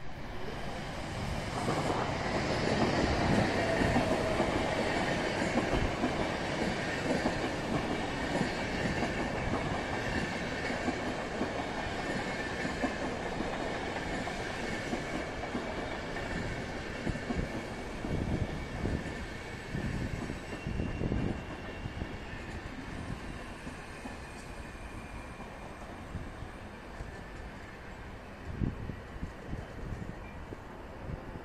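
Electric-hauled Intercity train running into the station: a steady rumbling roar that swells over the first couple of seconds as the locomotive passes, then slowly fades as the coaches roll by. Wheels clatter over rail joints with a thin high squeal, and there are a few low knocks near the end.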